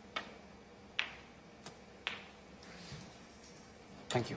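Snooker cue striking the cue ball, followed by sharp clicks of the balls colliding: about five clicks spread over the few seconds, the first two the loudest.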